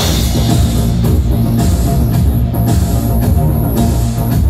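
Live rock band playing loud, with a drum kit keeping a steady beat under guitars over a heavy low end.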